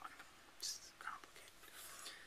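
A quiet pause in a man's talk, holding a few faint, short breathy hisses like whispered breaths.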